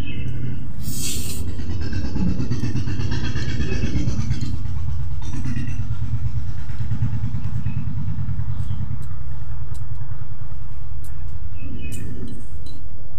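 A steady low rumble throughout, with a brief rustle of cloth being handled about a second in.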